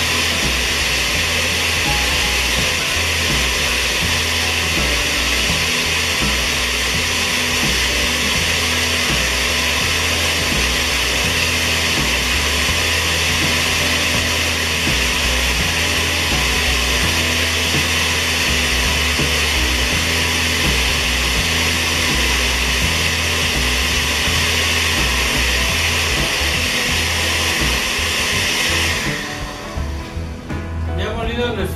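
Countertop blender running steadily at full speed, puréeing dried chiles, tomato, onion and garlic with chicken stock into a liquid adobo sauce. It cuts off suddenly near the end.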